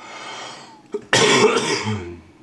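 A person coughing: a soft breath in, then a short catch and one loud, rough cough lasting under a second, starting about a second in.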